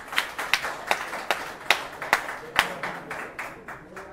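A small crowd clapping: applause made of many distinct sharp hand claps, thinning out near the end.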